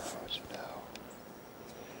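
A person whispering close to the microphone over a low hiss, with a couple of light clicks.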